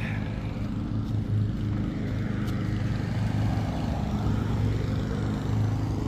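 A running motor's steady low hum, holding a few fixed pitches throughout.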